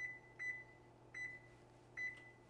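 Electronic beeps from an oven's touch control panel as keys are pressed to set it to bake: a short, high beep at each key press, four in all, each fading quickly.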